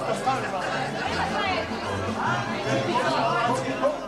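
Dance music with a steady bass beat under loud, overlapping crowd chatter and talk in a large, full hall.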